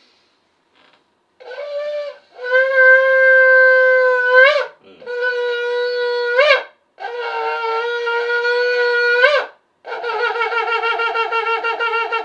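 Shofar blown: a short blast, then three long blasts on one note, each ending with an upward slide in pitch. From about ten seconds in comes a fast, wavering, pulsing blast.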